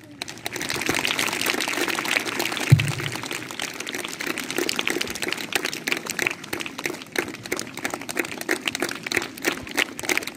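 Audience applauding, fuller for the first few seconds and then thinning to scattered claps, with one thump about three seconds in.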